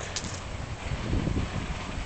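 Low, uneven rumbling background noise, a little stronger about a second in.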